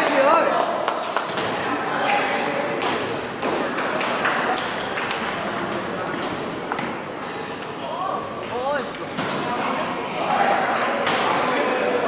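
Table tennis balls clicking off bats and the table in a rally, with further ball clicks from other tables around a large hall. Voices can be heard in the hall.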